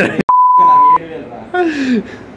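An edited-in censor bleep: one loud, steady, single-pitch beep of about three-quarters of a second, starting after a sudden cut to silence. Laughing voices come before and after it.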